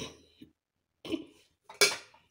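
A few short, quiet clatters and knocks, the last one near the end the sharpest and loudest.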